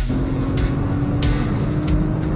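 Rock intro music: a dense, held chord in place of the plucked guitar riff, with drum hits about every 0.6 s.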